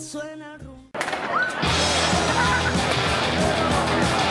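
A pop song fades out in the first second. Then comes an abrupt cut to live street sound: a crowd's din with shouting voices, growing louder about a second and a half in.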